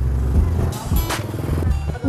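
Background music over street noise, with the low running of a motor vehicle passing.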